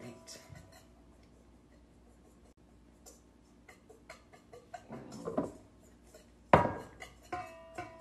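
A whisk clinking and scraping against a stainless steel mixing bowl as flour is stirred, with irregular light ticks and two louder knocks about five and six and a half seconds in that leave the bowl ringing briefly.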